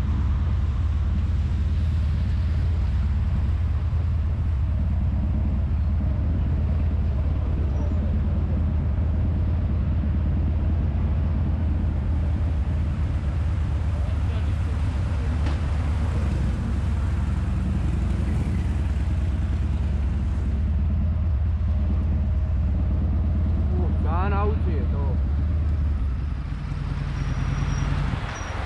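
Motorcycle engine running steadily at low revs, then shutting off about two seconds before the end.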